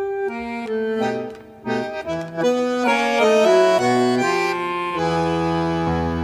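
Bandoneon playing a solo tango melody as a string of short reedy notes with brief breaks. About five seconds in it settles into fuller, held notes.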